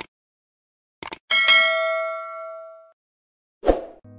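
Subscribe-button animation sound effect: mouse clicks, then a bell chime that rings out and fades over about a second and a half. A short noisy swoosh follows near the end.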